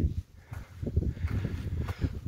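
A hiker's footsteps on a snow-covered mountain trail: irregular soft crunching steps, with rustling.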